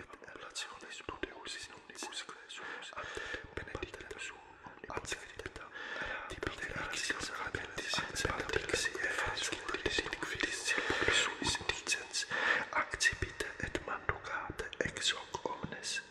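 A priest whispering the prayers of the Mass, a steady run of breathy words without voice, growing louder about six seconds in.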